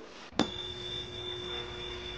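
A single chime sound effect struck about half a second in, ringing on with a clear high note over lower ones and holding steady until the end.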